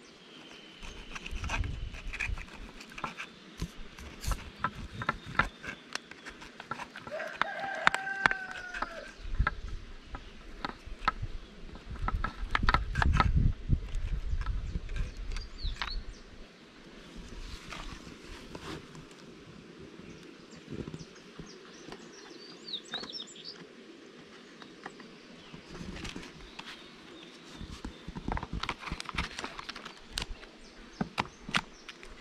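Irregular clicks, knocks and scraping of a knife working around the inside of a small wooden honey-super frame, cutting out jataí stingless-bee comb, with a bird calling once about eight seconds in.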